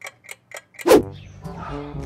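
Clock-ticking sound effect, about five quick ticks a second. Just under a second in, a loud sudden transition effect cuts it off, and background music starts.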